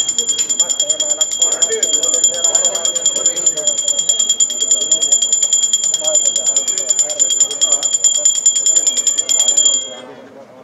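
Puja bell ringing rapidly and continuously during the aarti, a bright high ring with voices beneath it; the ringing stops abruptly near the end.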